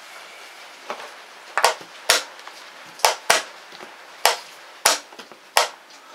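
Wooden chess pieces being set down hard on the board and the chess clock's buttons being pressed during a fast blitz exchange: seven sharp knocks in quick, uneven succession.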